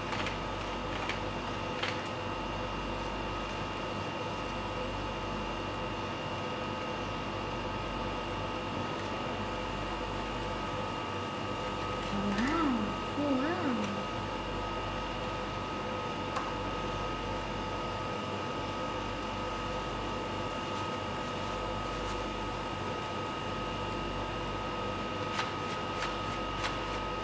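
Steady background hum with several fixed tones, like a fan or air conditioner running, at an even level throughout. Faint clicks of stiff pop-up pages being handled and a brief murmured voice about halfway through.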